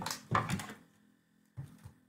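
A pause in the talk: a short trailing sound at the start, near silence, then a brief soft low thump about three-quarters of the way through.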